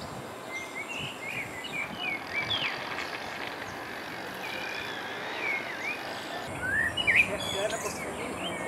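Small birds chirping in the trees, many short quick calls and pitch glides over a steady outdoor hiss, with a louder flurry of calls about seven seconds in.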